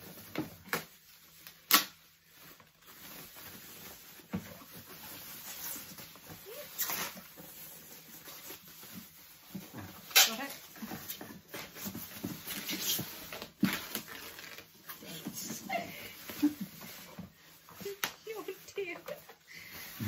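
Thin plastic bag rustling and crinkling as it is handled and pulled off a bottle steriliser, with several sharp crackles scattered through it.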